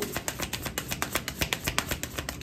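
A deck of tarot cards being shuffled by hand: a fast, even run of card clicks, about ten a second.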